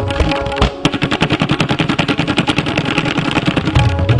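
Tabla played in a very fast, even run of sharp strokes, beginning just under a second in after a few separate strokes; the deep resonant bass drum drops out during the run and comes back near the end.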